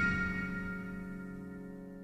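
A piano chord rings on and slowly fades away.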